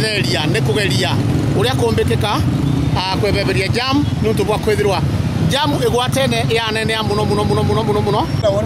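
People talking over the steady low rumble of vehicle engines in street traffic.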